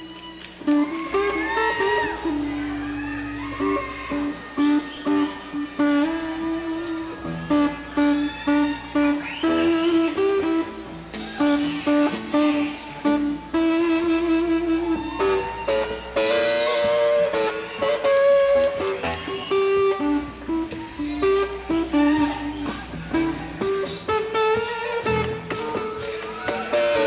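A live country-rock band playing an instrumental passage: electric guitar lines with some sliding notes over bass and a steady drum beat.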